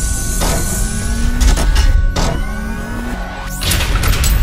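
Logo-sting sound design: a deep, loud rumble with whooshes sweeping through it, a flurry of sharp clicks in the middle, and a rising swoosh near the end.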